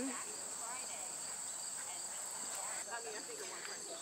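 Steady high-pitched drone of insects chorusing, unchanging throughout, with faint voices murmuring in the background.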